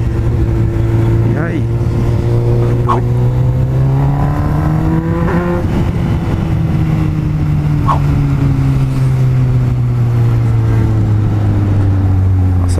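Honda Hornet motorcycle's inline-four engine heard from the saddle under way, its pitch climbing steadily through the first few seconds, then sinking slowly as the bike coasts. Wind rumbles on the microphone underneath.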